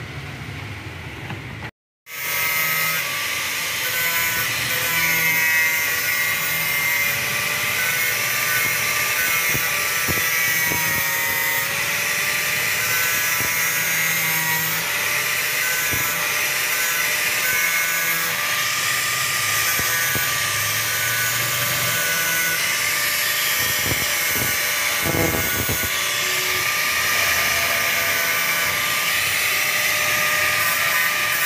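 Electric angle grinder cutting a rusty metal bar, starting about two seconds in and running steadily, with a high whine that wavers in pitch as the disc bites into the metal.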